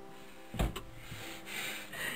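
A single dull knock a little after half a second in, followed by faint steady background tones.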